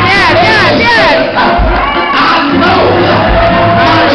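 A preacher shouting and chanting at the climax of a sermon, his voice swooping up and down, with the congregation shouting back over music. Low thuds come about every two seconds.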